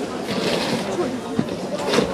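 Voices talking, with a plastic sheet rustling and crackling as it is shaken out near the end.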